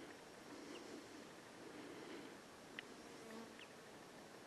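Very faint buzz of a flying insect, wavering in pitch, with a short high tick about three seconds in.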